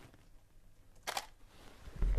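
DSLR camera shutter firing once about a second in: a quick two-part click of mirror and shutter, with near quiet around it. The shot is the reference frame of a gray card for setting a custom white balance.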